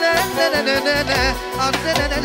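Live Romani wedding band music: a male singer's wavering, ornamented melody over a steady drumbeat and bass line.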